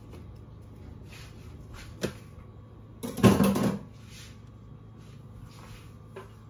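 A kitchen cupboard is opened: a single sharp click about two seconds in, then a louder clatter lasting under a second as things inside are moved. A low steady hum runs underneath.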